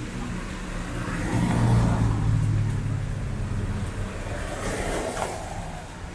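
Street traffic: a motor vehicle passes close by on a wet road, its engine hum swelling about a second in and fading by four seconds, followed by a brief hiss about five seconds in.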